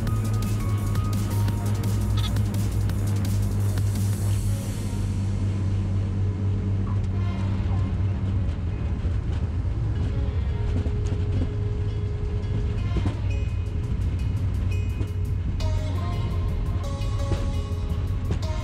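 Background music with a regular beat, over a steady low drone.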